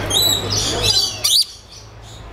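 Lories, small nectar-feeding parrots, chirping in quick high-pitched calls, with a loud burst of screeches just over a second in; after it the calling drops off and goes quieter.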